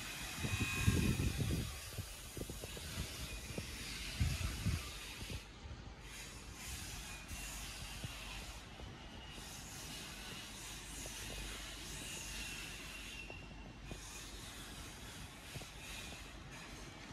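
Quiet outdoor background with a steady hiss, broken by low rumbling gusts near the start and again about four seconds in, and faint scattered knocks.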